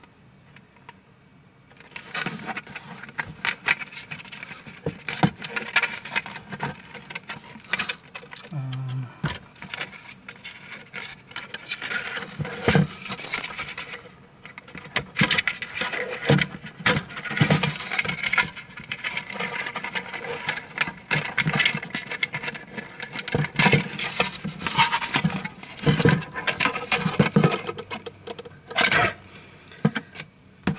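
Hands taking apart the plastic housing of a 3D printer: a dense, irregular run of plastic clicks, knocks, scrapes and rubbing that starts about two seconds in.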